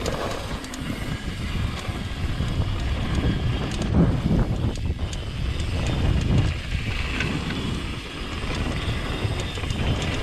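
Downhill mountain bike riding fast over a dirt trail: wind buffeting the camera microphone over the rumble of tyres on dirt and the rattle of the bike, with a few sharper knocks, the loudest about four seconds in.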